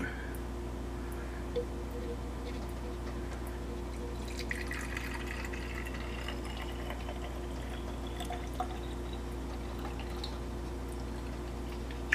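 Sugar water poured from a glass measuring cup into the plastic reservoir of a hummingbird feeder. From about four seconds in, the trickle carries a tone that climbs slowly in pitch as the reservoir fills.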